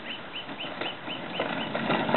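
A small bird chirping in a steady series of short, high, identical notes, about four a second. In the second half come a few knocks and clatters of the plastic toy roller-coaster car being pushed onto its plastic track.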